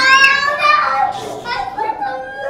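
Young children's high-pitched voices calling out and chattering.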